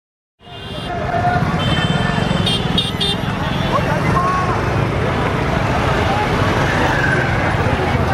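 Busy city street: motor traffic running under a babble of crowd voices, with a few short high beeps a couple of seconds in. It starts abruptly about half a second in, out of silence.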